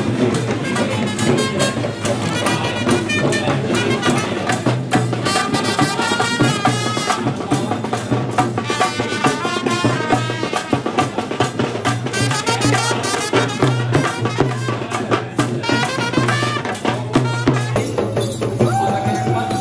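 Sri Lankan perahera procession music: traditional drums beating steadily under a high wind instrument playing a quavering, wavering melody.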